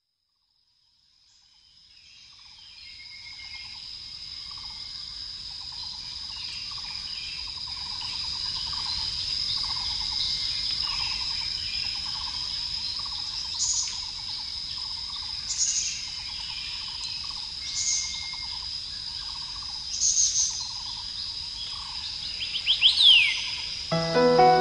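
Background nature ambience of insects and birds that fades in over the first few seconds. A steady high insect trill runs under a lower call that repeats a little faster than once a second. Short bird chirps come four times at roughly two-second intervals, then a louder flurry of calls comes near the end.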